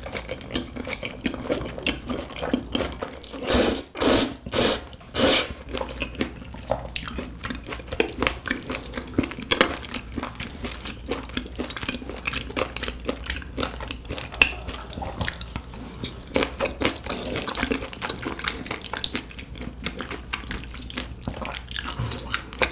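Close-miked wet chewing and mouth sounds of a person eating, a steady run of small smacks and crackles, with four louder bursts about four to five seconds in.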